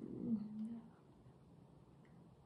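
A woman's drawn-out hesitation hum, held on one steady pitch for under a second, then near silence.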